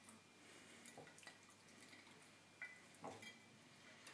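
Near silence with a few faint, soft wet sounds as raw chicken wings are slid from a dish into a bowl of liquid marinade, the clearest two near the end.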